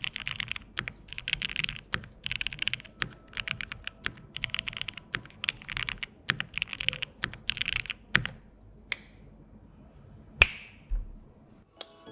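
Fast typing on a Spark 67 65% mechanical keyboard fitted with Marshmallow switches: dense runs of keystrokes for about eight seconds. The typing then thins to a few isolated key presses and one loud single clack near the end.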